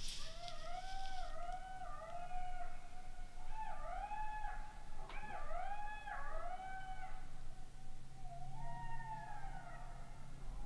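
A pack of golden jackals howling and yipping together, many overlapping wavering calls that rise and fall in pitch. There is a short click about five seconds in.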